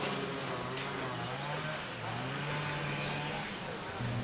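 Faint voices of people talking at a distance, over a low steady hum.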